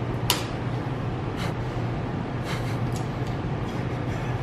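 Metal clicks and scrapes from hand work on the valve springs of an LS V8 cylinder head: one sharp click about a third of a second in, then a few softer scraping strokes. A steady low hum runs underneath.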